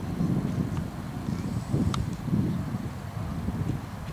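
Wind buffeting the microphone: an uneven low rumble. A single sharp knock sounds about halfway through.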